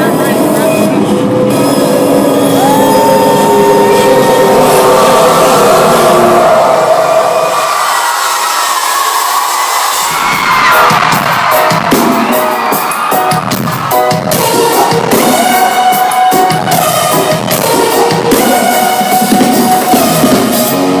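Live rock-pop concert heard from within the crowd: band music with voices and crowd cheering. The low end drops out for a couple of seconds about halfway through, then a beat comes back in.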